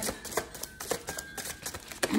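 Tarot cards being handled: a quick, irregular run of light clicks and taps.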